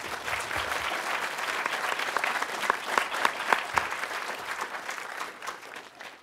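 Audience applauding: many hands clapping together, building through the middle and dying away near the end.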